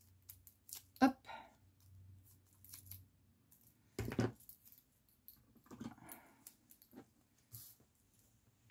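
Small craft scissors snipping a small strip with a few short, quiet clicks, then a sharp knock about four seconds in, followed by soft rustling and light clicks of the strip being handled.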